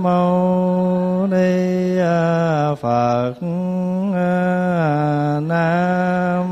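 A Buddhist monk chanting the Vietnamese recitation of the Buddha's name (niệm Phật). A single male voice holds long, slow notes that step up and down in pitch, with a short break for breath about three seconds in.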